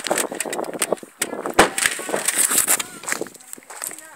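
Irregular knocks, clicks and rustling of a handheld phone's microphone being moved about while walking.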